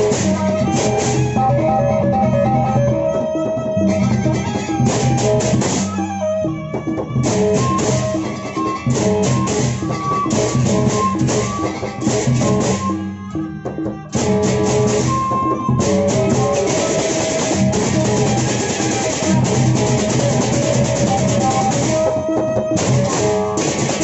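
A Sasak gendang beleq ensemble playing: large double-headed barrel drums beaten by hand, under a repeating pitched melody of bronze gongs and the clashing of many pairs of cymbals. The cymbals briefly thin out a few times, then thicken into a continuous wash in the last third.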